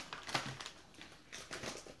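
A quiet pause with a few faint, scattered clicks and rustles.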